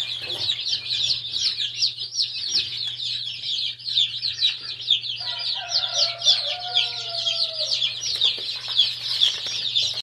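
A brooder full of young chicks peeping without pause, a dense stream of high, falling chirps from many birds at once. About five seconds in, a lower drawn-out call lasts about two seconds behind the peeping, over a faint steady low hum.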